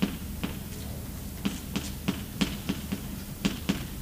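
Chalk tapping and scraping on a blackboard while writing: a quick, irregular series of short sharp taps, about three a second.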